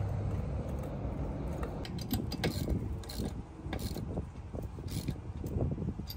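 Hand tools and a borrowed jack being worked after a tire change: irregular metallic clicks, ratchet-like ticks and clanks, most of them from about two seconds in.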